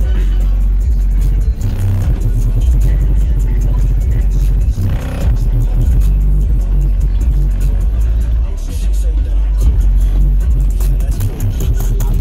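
Bass-heavy music with vocals played loud through a car audio system of Sundown Audio NSv4 12-inch subwoofers powered by Sundown SALT amplifiers, the deep bass far louder than the rest.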